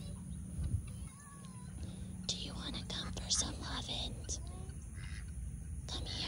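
Quiet outdoor pasture ambience: a low steady rumble of wind or handling on the microphone, a few faint bird chirps, and several short soft breathy rustles.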